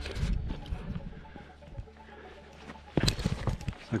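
Hiker's footsteps on a stony path and loose slate, with wind rumbling on the microphone that dies down after about two seconds. A louder, sharp clatter of stone comes about three seconds in.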